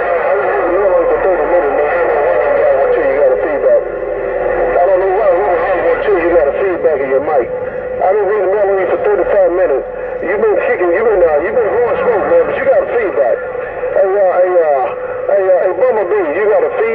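Uniden Grant XL CB radio receiving garbled, unintelligible voices over its speaker. A steady whistle runs under them, and another whistle falls in pitch over the first few seconds.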